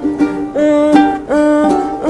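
Four handmade wooden ukuleles, built from reclaimed wood, played together as an ensemble in a melody whose notes change about every half second.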